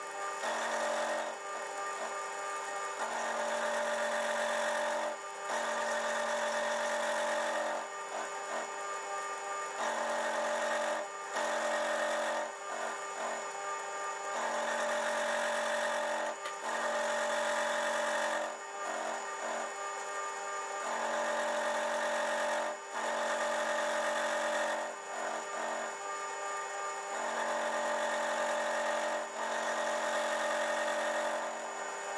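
A milling machine's end mill cutting the edge of a flat metal bar, rounding its end with a conventional cut. Each cut lasts a couple of seconds with a pitched, singing tone and is separated by short breaks as the cutter is worked around. A steady whine from the running spindle sits underneath.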